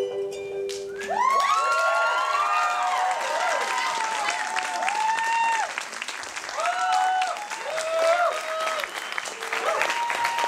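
A held note of the dance music ends about a second in. An audience then applauds, with overlapping whoops and cheers running through the clapping.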